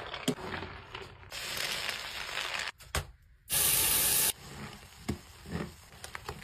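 Wet soap foam crackling and squelching, then a hiss lasting about a second and a half. After a brief pause and a click comes a loud spray burst of under a second. Soft squishing and clicks of soapy scrubbing follow near the end.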